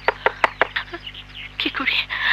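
A quick run of sharp knocks, about six in the first second, followed by a few softer, noisier sounds near the end.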